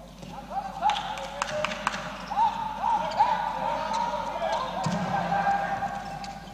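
Indoor handball play: sneakers squeak in short chirps on the court floor, with sharp thuds of the ball bouncing and being thrown.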